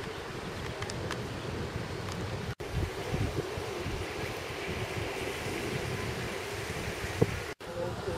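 Wind rumbling on the microphone, with faint voices in the background. The sound drops out briefly twice, about two and a half seconds in and just before the end.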